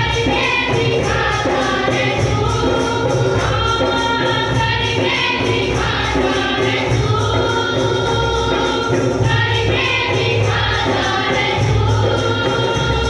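Group of voices singing a devotional worship song over instrumental accompaniment, with a steady bass line and a rhythmic jingling percussion beat.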